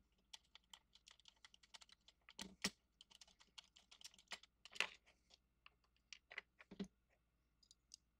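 Faint clicking and tapping of hands working the knobs and U-shaped mounting bracket off a small MFJ communication speaker, with a few louder knocks about two and a half, five and seven seconds in.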